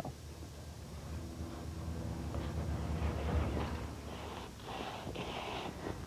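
A spade pushed into garden soil and turning it over, digging compost into the top few inches of a vegetable bed: a soft, irregular scraping of soil, loudest around the middle, with a faint low hum underneath.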